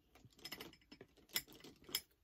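Makeup brushes rattling and clicking against one another and their holder cup as they are rummaged through, with a few sharper clicks, the loudest about a second and a half in and another near the end.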